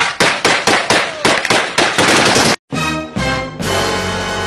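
A rapid run of loud gunshots, about four a second for two and a half seconds, that cuts off suddenly; music follows.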